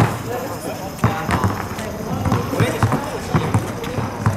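A basketball bouncing on an asphalt court, a series of low thuds at uneven spacing, with voices talking in the background.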